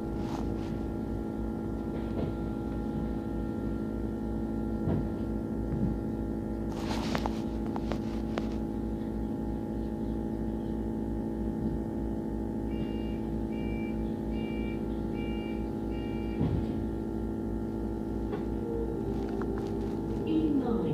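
Steady hum of a double-decker bus's drivetrain heard from on board, with a few light knocks and a brief rattle about seven seconds in. A run of five short high beeps comes a little past the halfway mark.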